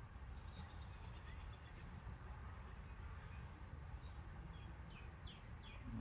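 Faint bird chirps, a scatter of short falling notes mostly in the second half, over a low steady outdoor rumble.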